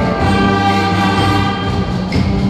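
A school concert band of woodwinds and brass playing a held full chord, which begins right at the start and is sustained steadily.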